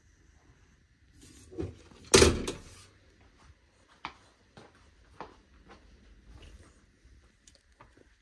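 The steel door of a home breaker panel is swung shut with a sharp knock about two seconds in, the loudest sound here, after a smaller knock just before it. Faint footsteps follow, about one every half second.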